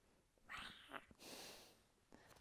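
A faint whispered 'wow' followed by a breathy exhale, with no voiced pitch.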